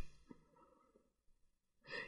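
Near silence between narrated sentences, with a faint intake of breath near the end.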